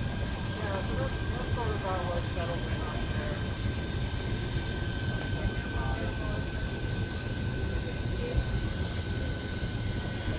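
Steam venting with a steady hiss from small steam engines, with a thin, steady high tone held over it. People talk in the background during the first few seconds.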